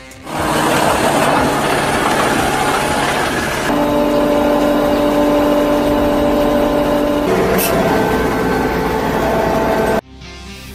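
Wheel loader's diesel engine and hydraulics working a Geurs KLR-3000 2M tree spade as it digs in around a tree. The first few seconds are a noisy hiss, then a steadier mechanical drone with a hum of tones sets in and shifts pitch about seven seconds in; the sound cuts off abruptly at the end.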